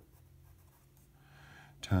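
Pencil writing on paper, a faint scratching of graphite as numbers and a letter are written out, over a faint low hum.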